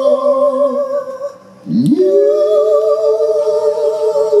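Live singers holding long notes in two-part harmony with vibrato, with no band heard behind them. The voices break off briefly about a second and a half in, then the lower voice slides up into a new long held note under a wavering upper one.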